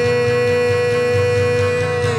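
A man's voice holding one long, steady sung note on the word "today" over strummed acoustic guitar.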